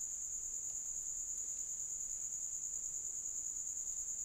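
Low background hiss with a steady high-pitched whine running through it: the recording's own constant noise floor between stretches of speech.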